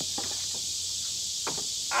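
A steady high drone of insects in summer woods, with a few faint knocks as split firewood is set onto a woodpile.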